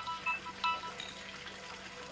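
A mobile phone ringtone: a few short electronic notes in the first second, then it stops as the call is picked up.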